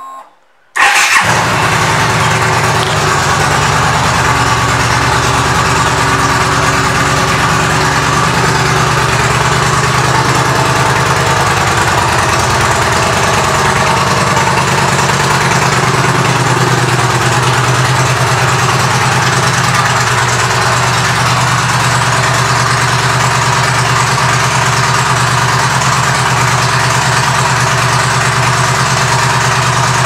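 2014 Yamaha V Star 950's air-cooled V-twin, fitted with a Vance & Hines aftermarket exhaust, starting up about a second in and then idling steadily. It is loud throughout.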